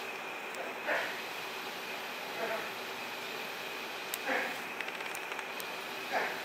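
A person's voice saying three short, soft words about a second and a half apart, over a steady room hum with a faint high-pitched tone.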